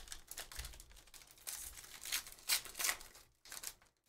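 Foil wrapper of a 2023 Panini Phoenix football hobby pack being torn open and crinkled by hand, a run of irregular crackles, loudest a little past halfway.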